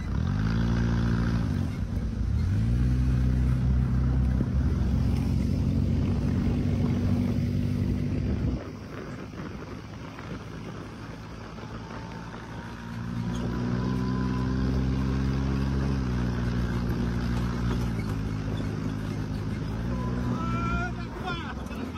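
Desert dune buggy engine revving up twice, then running at a steady pace. It drops away abruptly about eight seconds in, leaving a quieter rushing noise, and an engine comes back in steadily about five seconds later.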